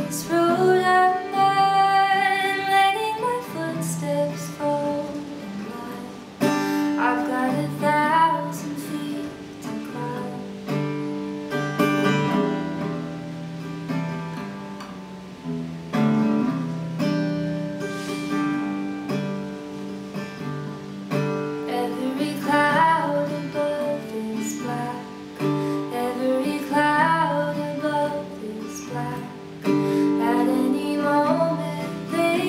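Woman singing over a strummed acoustic guitar, with passages of guitar alone between sung lines.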